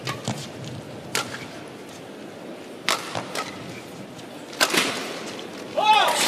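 Badminton rackets striking a shuttlecock in a fast doubles rally: about five sharp cracks spaced irregularly, the loudest near the end, over a low, steady arena hum.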